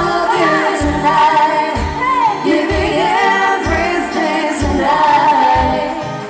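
Live pop band playing, a singer's wavering melody over electric guitar and a low beat that falls about once a second.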